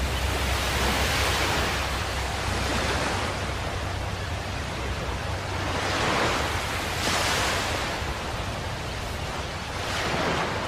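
Ocean surf: a rushing sound that swells and fades several times, like waves breaking, with no music.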